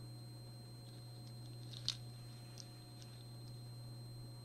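Quiet room tone with a steady low electrical hum, broken by a few faint clicks and ticks, the loudest a single short tick about two seconds in.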